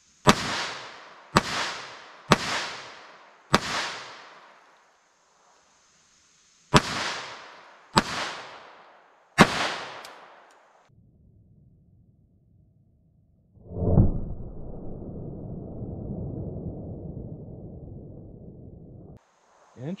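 Beretta Bobcat .22 LR pistol firing CCI Stinger rounds: seven sharp shots, four in quick succession, then three more after a pause of about three seconds, each followed by a trailing echo. Later a low rushing noise runs for about five seconds and stops suddenly.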